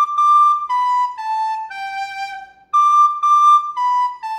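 Soprano recorder playing the descending phrase high D, D, B, A, G twice: two even high notes, then three stepping down, the last G held longer. The second run starts about two-thirds of the way through.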